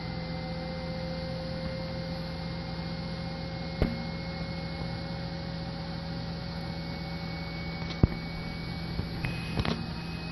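Steady electrical hum with a faint high whine from the powered-up cockpit avionics of a Cirrus SR22 running on battery, as the Garmin display reboots. Two sharp clicks come about 4 and 8 seconds in, and a few small ones near the end.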